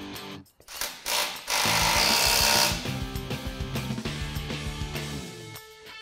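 Background music with steady held notes, with a loud burst of power-tool noise lasting about a second, about two seconds in.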